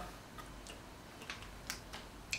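Faint crunching of a hard-coated coconut chocolate dragee being bitten: about four short, crisp clicks spread through a quiet stretch.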